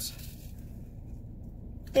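A short sniff as a woman smells a packet of glue and residue eraser, then a steady low background hum.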